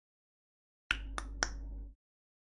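Three sharp clicks about a quarter of a second apart, over a low steady hum that starts with the first click and stops suddenly a moment later.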